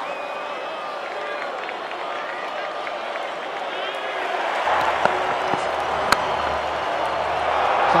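Open-air cricket field sound with faint voices and calls from players, then a broader background murmur. About six seconds in comes a single sharp crack of the bat striking the ball.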